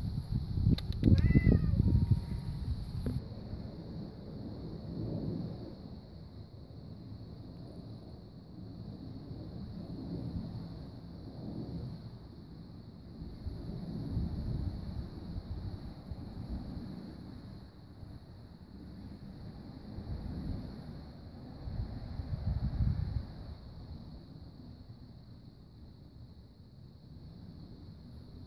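Wind buffeting the microphone outdoors: a low rumble that swells and fades in gusts. It is louder in the first few seconds, with knocks and rustles, and a faint steady high hiss runs underneath.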